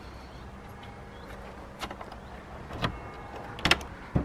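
Wooden door of a grill hut being unlatched and opened: a few sharp clicks and knocks, the loudest a quick double knock near the end, over a steady low background hum.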